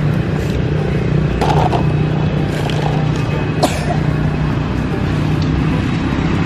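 A steady low hum throughout, with a few light clatters of plastic action figures being dropped into a plastic toy dump truck's bed, one about a second and a half in and a sharper one past the halfway point.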